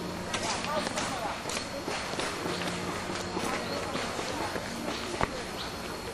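Indistinct voices and chatter of people nearby, with scattered light clicks and a single sharp knock about five seconds in.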